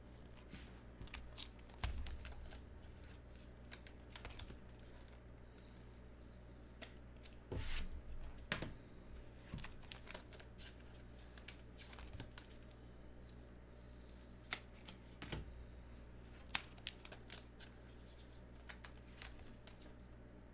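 Trading cards being handled and sorted with gloved hands: soft scattered rustles, slides and light clicks, with louder bursts of rustling about two seconds in and again around eight seconds in.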